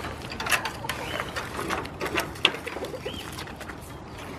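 A goat biting and crunching a dry cracker held out to it by hand: a run of irregular crisp crunches and cracks. A small bird chirps in the background.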